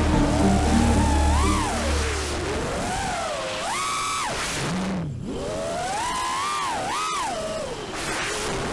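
Brushless motors and propellers of a 5-inch FPV racing quadcopter (Hobbywing XRotor 2205 2300kv motors, DALprop T5045 props) whining, the pitch rising and falling repeatedly with the throttle. The whine drops out briefly about five seconds in. Background music fades out over the first two seconds.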